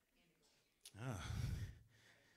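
A pause, a small click, then a man's drawn-out, sighing 'uh' into a handheld microphone.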